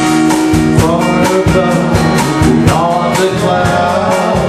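Live band playing a slow jam on bass guitar, electric guitar, drum kit and congas, with steady drum beats under a lead melody that slides up and down in pitch.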